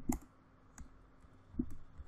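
Computer keyboard being typed on: a few separate keystroke clicks with short gaps between them, the loudest just after the start.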